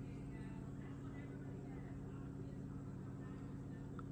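A 1/18-scale rock crawler's Furitek brushless motor creeping at a slow crawl, nearly silent: only a faint steady low hum, with a woman talking faintly in the background. The drive is smooth at the lightest throttle, without the awful noise the stock system made at a slow crawl.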